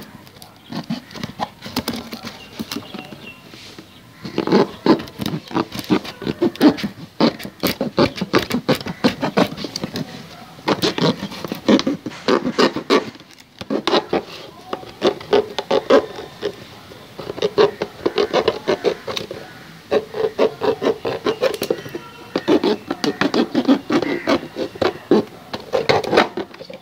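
A knife sawing through the wall of an empty plastic bottle: quick rasping strokes in bursts of a second or two, with short pauses between them.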